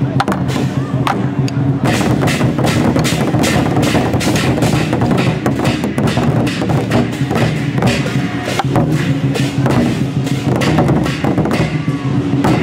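Chinese barrel drums and brass hand cymbals playing together: a fast, steady run of drum strokes with cymbal clashes.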